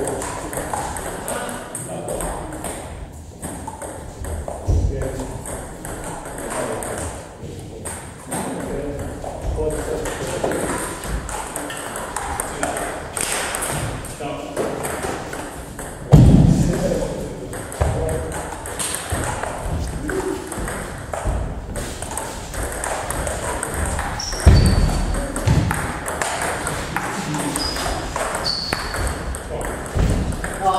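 Table tennis ball clicking off bats and the table in rallies, a quick run of sharp pings between pauses. Two louder thumps stand out, one just past halfway and one about three quarters of the way in.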